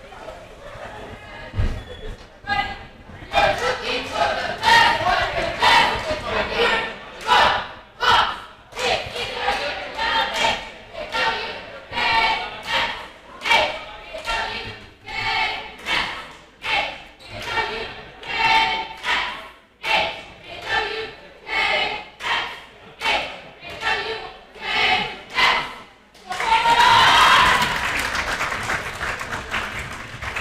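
Cheerleaders chanting a rhythmic cheer in a gymnasium, with a sharp beat roughly every three-quarters of a second. Near the end the chant gives way to a burst of cheering.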